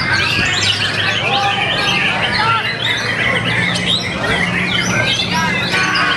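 White-rumped shamas (murai batu) singing at once: a dense, overlapping run of whistles, chirps and rattles that never lets up, over a low steady hum.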